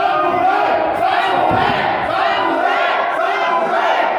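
Crowd of wrestling spectators shouting and yelling, many voices overlapping without a break.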